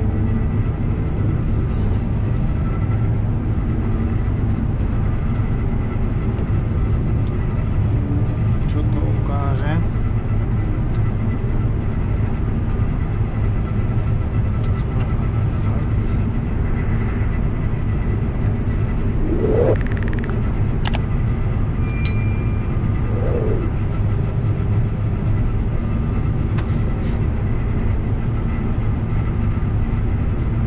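New Holland CX combine harvester running steadily under load while harvesting maize with a row-crop corn header, heard from inside the cab as a constant low drone. A few brief rising tones come about ten, twenty and twenty-three seconds in.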